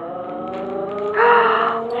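A woman's long, drawn-out 'ooooh' of admiration, held at one steady pitch and growing louder, as a gift is unwrapped.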